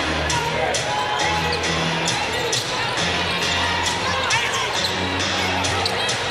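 A basketball being dribbled on the court in a steady rhythm, about two to three bounces a second, over arena music with a steady low bass line.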